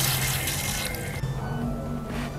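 Tap water running into a ceramic washbasin and splashing over a plastic mug as it is rinsed by hand. The water noise fades about halfway through as background music comes up.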